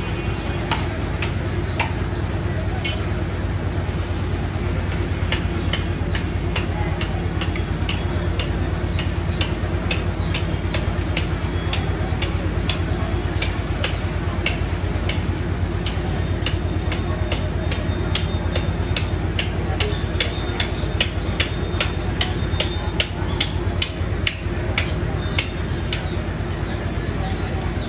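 A steady low mechanical hum, with many sharp clicks and knocks over it that come more often in the second half.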